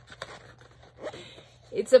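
Faint, brief rustling and scraping of a rolled unframed canvas poster being handled and unrolled.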